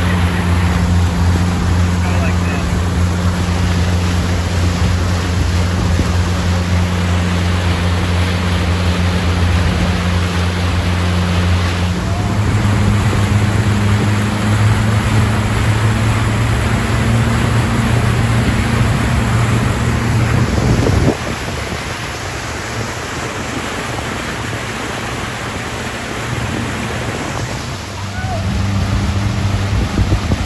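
70 hp outboard motor running at full throttle on a pontoon boat, a steady engine drone over the rush of churning wake water and wind. About twelve seconds in the engine note steps slightly higher, and a little after twenty seconds the sound drops sharply in level.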